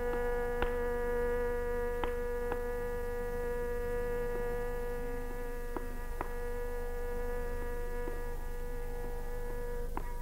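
Tanpura drone ringing steadily on its own, its strings plucked now and then, over a low electrical hum.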